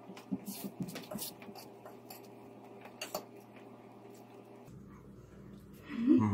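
Faint table sounds while eating: a few short clicks and crinkles from a metal fork working noodles on a ceramic plate and a foil chocolate bag being handled, over a low steady room hum.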